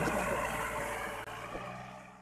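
Tractor engine running under load, steadily fading away.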